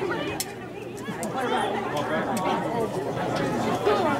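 Several people chatting at once, their voices overlapping into an indistinct babble with no clear words, among spectators at a soccer game.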